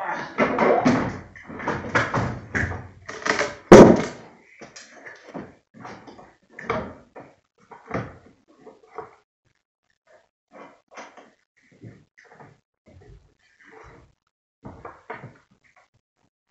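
A heavy car battery being shifted in a pickup's engine bay and jumper-cable clamps being fitted to the terminals: irregular clunks and clicks. The loudest is a sharp knock just under four seconds in, followed by sparser, fainter clicks.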